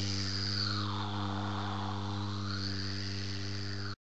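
Synthesized electronic drone on one steady low note, with a hissing whoosh that sweeps down in pitch and back up. It is played as an end-title sting and cuts off suddenly at the end.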